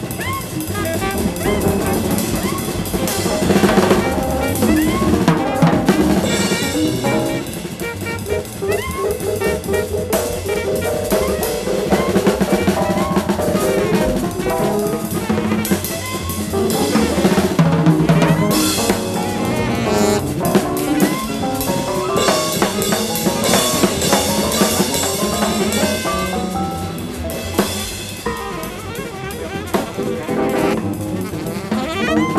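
Live jazz-rock band playing, with a busy drum kit to the fore, saxophone and electric piano in the mix.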